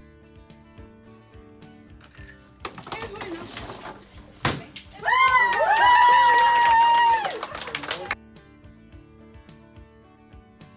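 A group of children's voices, then a single sharp knock, then children shrieking and cheering together in high voices for about two and a half seconds, the loudest part; soft guitar background music runs underneath throughout.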